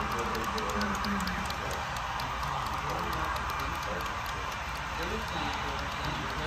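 Indistinct voices of people talking in the background over a steady whirring hum, with faint, irregular light ticking.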